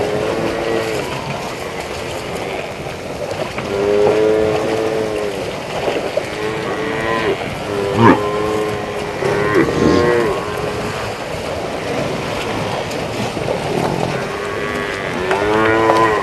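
A herd of African (Cape) buffalo lowing: about half a dozen drawn-out, moo-like calls, some overlapping, over a steady hiss. A sharp knock about halfway through.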